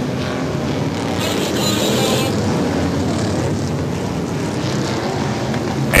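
Engines of a pack of figure-8 stock cars running at caution pace as the field passes, a steady mechanical drone with a brief hiss about a second in.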